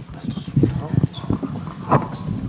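Low, indistinct voices in the room, with no words made out.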